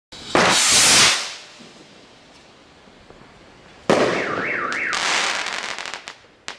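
Dynasty Goliath firework rocket launching with a rushing hiss of about a second, then about three seconds later a sudden loud burst followed by crackling. A tone warbling up and down sounds over the burst.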